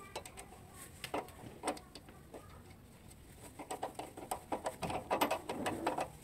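Light metal clicks and taps from a socket wrench turning the rear shock absorber's lower mounting bolt: a few scattered at first, then coming in a quick run through the second half.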